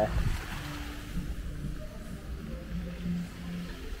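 A steady low rush of outdoor background noise, of the kind that wind on the microphone or splashing fountain water makes.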